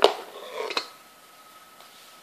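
Handling noise from a cardboard sheet and a pair of metal-bladed scissors: one sharp clatter, then a few lighter knocks and rustles within the first second.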